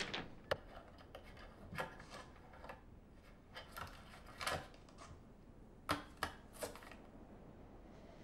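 A hand feeling along the underside of a wooden drawer: faint, scattered rubs and light knocks, with two sharper taps, one near the start and one about six seconds in.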